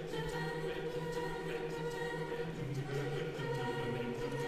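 A cappella vocal group of men and women singing sustained chords in harmony, voices only with no instruments.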